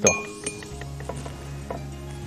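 A single sharp clink of a metal utensil against a ceramic bowl right at the start, ringing briefly, followed by a couple of faint ticks. Soft background music with low held notes runs underneath.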